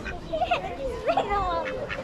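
Domestic white ducks quacking, a few short quacks mixed with voices.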